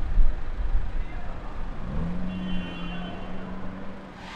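Lamborghini Urus twin-turbo V8 running as the SUV pulls slowly away in traffic. The exhaust is low and loudest in the first second, then its note rises about halfway through and holds steady.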